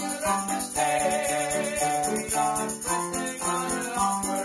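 A man singing a worship song to his own electric keyboard accompaniment, with a tambourine shaken in a steady rhythm.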